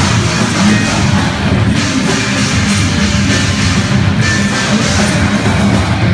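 Live heavy rock band playing loud and dense, with drum kit, electric guitar and bass guitar together.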